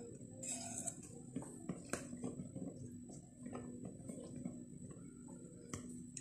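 Faint, irregular light taps and clicks of bowls knocking together as flour is tipped from a ceramic bowl into a plastic sieve for sifting, over a low steady hum.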